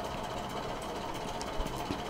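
Steady low background hiss and hum of the recording, room tone between spoken phrases, with a couple of faint clicks near the end.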